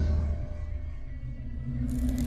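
Deep low rumble of cinematic trailer sound design under faint ringing tones that die away. Near the end a new sudden hit comes in.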